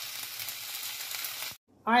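Beef fajita strips frying in a greased pot, a steady sizzle that cuts off abruptly about one and a half seconds in.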